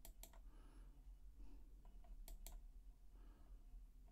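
Faint, sparse clicks from working a computer: a few sharp clicks close together right at the start, and two more a little after two seconds in.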